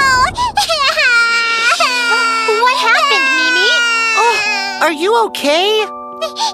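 A high-pitched cartoon character's voice crying and sobbing in long, wavering wails that fall in pitch.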